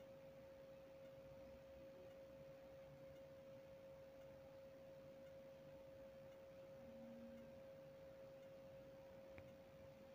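Near silence, with a faint, steady, unchanging hum.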